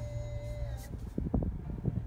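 Infotainment touchscreen gives a thin steady tone for under a second as it is pressed, then a few soft taps, over a steady low hum inside the car's cabin.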